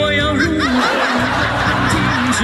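A Mandarin pop ballad sung live into a microphone over its backing track, with audience laughter mixed in.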